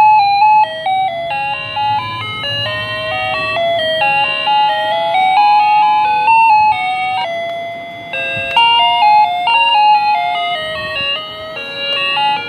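WDS wireless doorbell chime receiver playing its built-in electronic melody, a continuous run of quick stepped notes.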